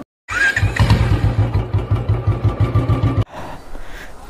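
Motorcycle engine starting and running with an even, rhythmic low thump. It cuts off suddenly after about three seconds, leaving quieter street noise.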